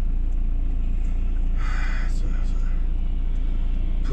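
Cabin sound of a Ford Transit 2.4 TDCi diesel van on the move: a steady low engine and road rumble, with a brief hiss about two seconds in.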